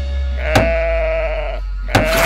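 A sheep bleat sound effect: one drawn-out baa lasting about a second, over background music, with a sharp click at its start and another near the end.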